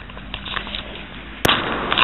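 A car passing on the street, its road noise swelling after a single sharp knock about one and a half seconds in.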